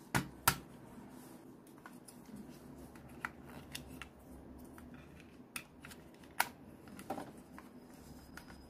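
Plastic clicks and snaps from handling a small folding handheld battery fan, its hinged handle and battery cover being worked. Two sharp clicks come in the first half second, the second the loudest, followed by scattered lighter clicks.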